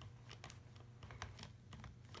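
Near silence broken by faint, irregular light clicks from a talking SpongeBob SquarePants figure being worked by a finger between its sayings.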